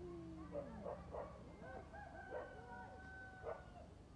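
Faint animal calls: long drawn-out calls, one sliding down in pitch near the start, overlapping with several short sharp calls.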